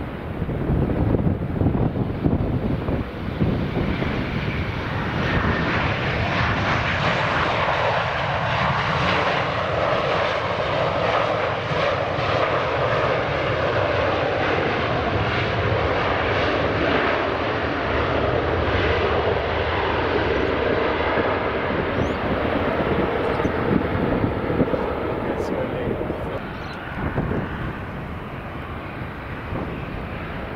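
Boeing 737 jet engines heard during landing and the roll-out along the runway: loud, steady jet noise that builds in the first couple of seconds and eases off a few seconds before the end.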